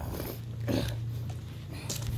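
Steady low hum of an idling vehicle engine, with a short soft sound about three-quarters of a second in.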